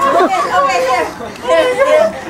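Several people talking over each other in indistinct chatter.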